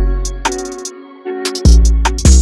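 Trap hip-hop instrumental beat: a deep 808 bass note fades out within the first second and a second one hits near the end, with a synth melody and crisp hi-hat and snare hits over it.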